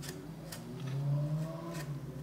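A few light clicks and taps from fine-brush work on a plastic scale model, over a low steady hum that swells briefly in the middle.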